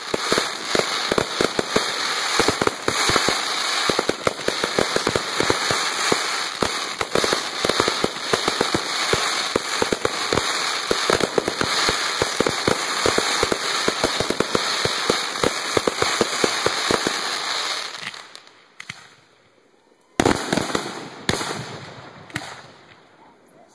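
Fireworks going off: a dense, rapid stream of crackling pops that runs for about eighteen seconds and then dies away, followed by a short second burst of pops near the end.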